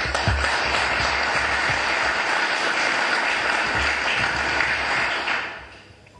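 A small audience applauding, starting at once and dying away about five and a half seconds in.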